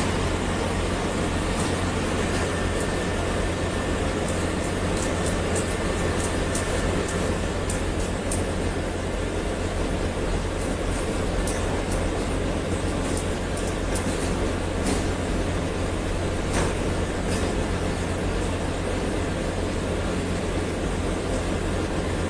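Cable-making machinery running steadily: a constant drone with a low hum under it and occasional light clicks.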